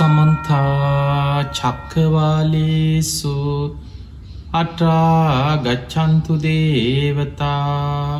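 A man chanting in long, drawn-out held notes with slow swoops in pitch, in several phrases separated by brief breaks, in the style of Buddhist devotional chanting.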